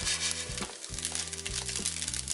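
Crumbled extra-firm tofu sizzling and crackling as it fries at medium heat in a nonstick pan, under background music with a steady bass line.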